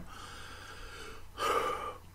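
A man sighing: a faint breath, then a louder breath about one and a half seconds in that lasts about half a second.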